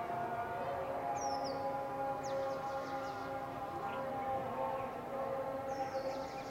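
Long, steady held tones at several pitches at once, stepping to a new pitch about half a second in, with a few short high bird chirps over them.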